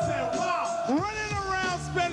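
Live hip-hop music with a drawn-out, voice-like sound gliding in pitch: a held note fades out early on and a new one swoops up about a second in and holds.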